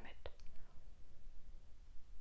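A pause in a woman's talk: a single soft click just after it begins, then only faint room noise with a low hum.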